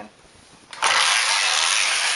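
Knitting-machine carriage pushed across the needle bed to knit a row: a steady sliding rattle that starts about a second in and lasts about a second and a half. The pass goes through easily, with no tension on the long cable loops.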